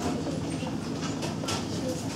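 Indistinct chatter of several people talking at once, with a few faint clicks.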